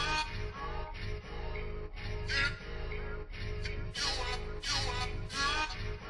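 A boom bap hip-hop beat playing back from FL Studio: a looped sample with pitched phrases that slide downward, over a steady low bass.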